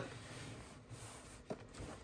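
Faint rubbing and handling of a small plastic mini fridge as it is turned around, with one light tap about one and a half seconds in.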